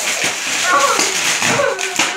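Wrapping paper crinkling and tearing as a dog pulls and chews at a wrapped present, with short voice sounds in between.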